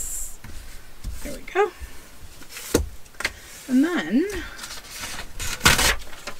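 Hands handling paper on a table: a sharp tap near the middle and a short, loud rustle of paper being slid across the surface just before the end. In between come a person's brief wordless hums.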